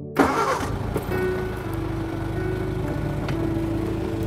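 An old taxi car's engine started with the ignition key: it catches suddenly about a quarter second in, then settles into a steady idle.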